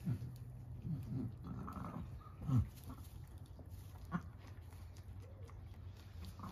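A ewe making low, deep rumbling calls to her newborn lamb: several short grunts that fall in pitch, the loudest about two and a half seconds in, the soft mothering call a ewe gives a freshly born lamb. A sharp click comes just after four seconds.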